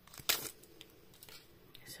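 Foil Pokémon booster pack wrappers handled on a table: a sharp crinkle about a third of a second in, then a few faint rustles and ticks as the packs are moved and picked up.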